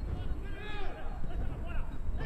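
Faint voices calling out on a football pitch over a steady low rumble of open-air field ambience, quieter than the broadcast commentary.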